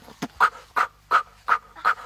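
A goat making quick, rhythmic throaty grunts and clicks that sound like beatboxing, about three beats a second.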